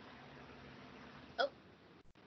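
Faint room tone with a low steady hum, broken about one and a half seconds in by a woman's short exclaimed "Oh".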